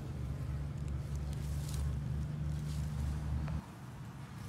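A low, steady mechanical hum, like a motor running, that cuts off suddenly about three and a half seconds in.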